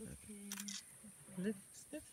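DSLR camera shutters clicking a couple of times in quick succession about half a second in.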